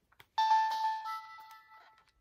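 Nintendo DSi startup chime as the console powers on: a short chime of a few notes that starts about half a second in, gains higher notes partway through and fades away near the end.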